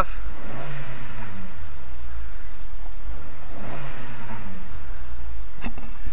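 A Mazda Protégé's 1.8-litre four-cylinder engine idling and being blipped twice, the revs rising and falling back to idle each time. A couple of short clicks come near the end.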